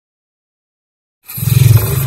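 Intro sound effect for a channel logo: a loud, deep rumble with a thin hiss on top that starts suddenly just over a second in.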